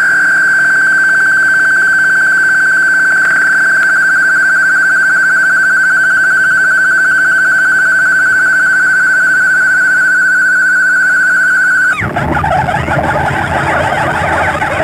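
Sample-based harsh noise piece: a loud, steady, high-pitched tone with a slight waver is held for about twelve seconds, then cuts off suddenly into a dense churning wall of noise.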